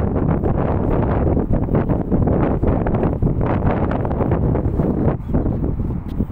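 Wind buffeting the phone's microphone in loud, uneven gusts, easing a little near the end.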